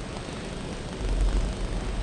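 Film soundtrack background: a steady hiss, with a deep low rumble coming in about a second in and holding.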